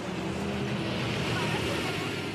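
Steady city traffic noise with vehicle engines running, an even rush of sound without sudden events.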